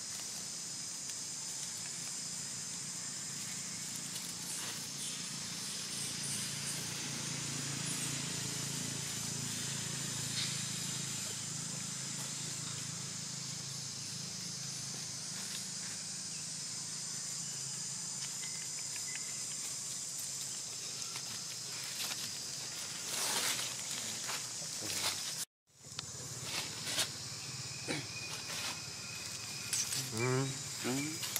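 Outdoor ambience dominated by a steady high-pitched drone of insects over a low steady hum. Light rustles and crackles of dry leaves come more often in the last few seconds, and the sound drops out for an instant near the end.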